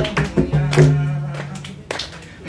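Tabla accompaniment to a Bengali folk song: a few quick drum strokes, then a low tone held through the middle, and a sharp stroke near the end.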